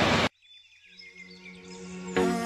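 Street noise cuts off abruptly a moment in, then background music fades in, opening with high little chirps over a low steady tone and growing louder.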